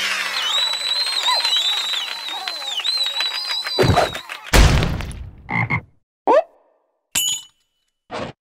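Cartoon creature sound effects: a dense run of high, squeaky calls sliding up and down for about four seconds, then two heavy thumps, then a few short separate squeaks and cries.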